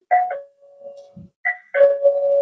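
Video intercom indoor monitor sounding its doorbell ring: a two-note ding-dong chime, high note then low, struck twice about a second and a half apart, the low note ringing on each time. It is the call tone set off by the doorbell-switch input, showing that the input works.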